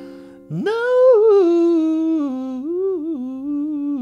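A woman humming a wordless melody: her voice slides sharply up about half a second in, then drifts slowly down in a wavering line and settles on a held low note. A ukulele chord fades underneath at the start.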